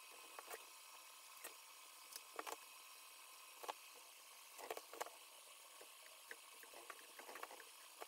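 Near silence with scattered faint ticks and rustles from adhesive foam sealing strip being handled and pressed onto a dust collector's metal inlet ring.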